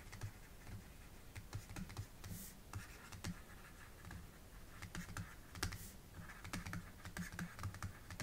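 Faint, irregular clicks and light scratching of a stylus on a pen tablet during handwriting.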